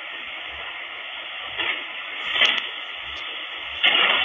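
Steady hiss from a DSP SDR receiver in upper-sideband mode being tuned across the 11-metre CB band, with a few brief louder bursts about one and a half, two and a half and four seconds in as the tuning passes signals.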